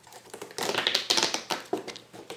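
Cardboard and paper handled in a toy mystery box: a dense run of quick crackles and scrapes, loudest around the middle, as a cardboard insert is worked loose and lifted out.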